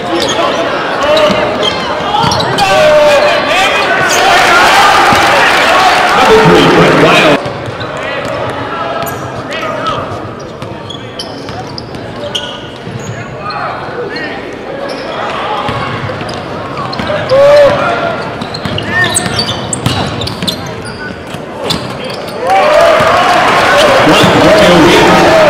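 Live game sound in a large gym: a basketball dribbling on the hardwood court, sneakers squeaking, and crowd voices and shouts. The level drops suddenly about seven seconds in and jumps back up near the end.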